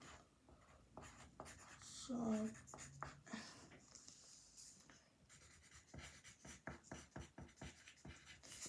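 Pencil writing on paper: a quick run of faint scratching strokes. A brief murmur of a voice comes in about two seconds in.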